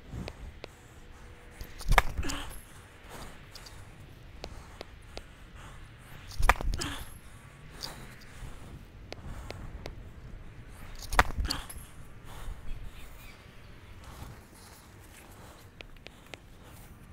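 Tennis serves hit hard down the T: three sharp racket-on-ball strikes about four and a half seconds apart, each followed by a brief trailing sound.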